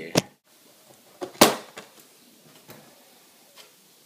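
Sharp clicks and knocks of handling as the camera is set down and a MacBook Pro's aluminium bottom case is taken off. The loudest knock comes about a second and a half in, followed by a few lighter ticks.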